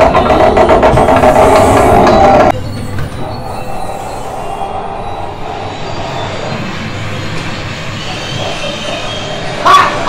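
Loud ride show audio with a fast, regular clicking cuts off about two and a half seconds in. That leaves the steady low rumble of the dark-ride vehicle rolling along its track. Just before the end a short loud burst marks the next scene's audio starting.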